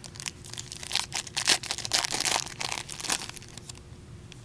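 A hockey trading card pack's wrapper being torn open and crinkled by hand: a dense run of crackles and rips lasting about three seconds.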